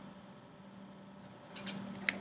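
Quiet room tone with a faint steady low hum and a few faint short clicks near the end.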